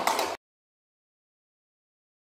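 Sound cuts off abruptly about a third of a second in, followed by dead digital silence.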